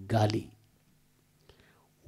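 Only speech: a man says one short word into a microphone, then pauses.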